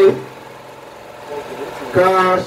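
A man speaking through a handheld microphone and PA in short phrases, with a pause in between. A steady low hum, like an idling engine, runs underneath.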